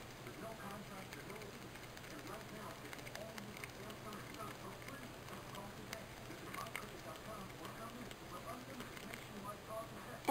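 A stirring stick scraping and clicking faintly against a small plastic medicine cup as loose eyeshadow pigment is mixed with rubbing alcohol into a liquid, over a steady low hum.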